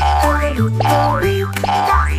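Instrumental backing of a children's song with a bouncy bass line, with cartoon 'boing' sound effects on top: three quick rising-and-falling pitch glides, one about every 0.7 seconds.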